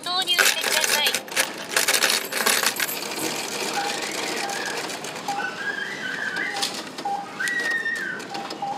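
Coins clattering and jingling in a supermarket self-checkout machine during cash payment. There is a busy run of clinks over the first few seconds, then quieter short tones from the machine.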